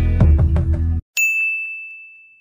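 Intro music with a strummed beat stops about halfway through. A single bright ding follows and rings out, fading away: a notification-bell sound effect for the subscribe button.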